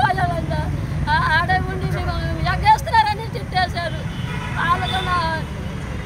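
A woman speaking in short phrases, over a steady low rumble of street traffic.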